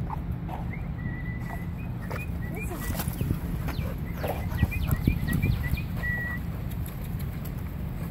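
Dogs playing and scuffling on dirt, with scattered short knocks and small noises under a steady low rumble on the microphone. A bird chirps a high, repeated note in the background, held longer about a second in and again near the end.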